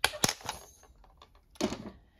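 Plastic paper trimmer being lifted and handled: a few sharp clicks and knocks in the first half second, faint small ticks, then a short clatter near the end.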